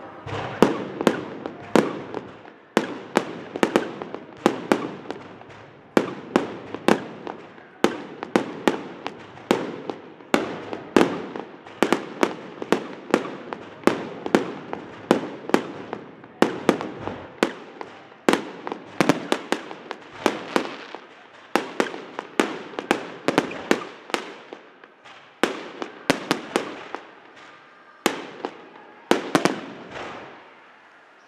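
Aerial fireworks bursting in a continuous barrage, two or three sharp bangs a second, each trailing off in an echoing rumble.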